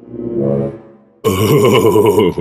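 A deep, drawn-out cartoon grunt that swells and fades over about a second. It is followed by a much louder, dense burst of sound that cuts in abruptly just past the middle.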